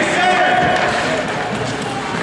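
Voices calling out in an ice arena, with one drawn-out call in the first second, over a steady haze of rink noise.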